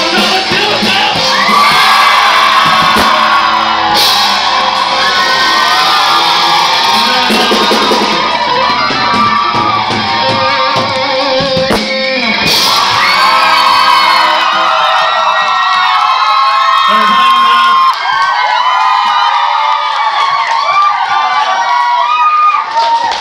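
Live band with electric bass and drums playing a rock number under singing, shouts and whoops. About two-thirds of the way through, the bass and drums drop out and only voices singing and shouting go on.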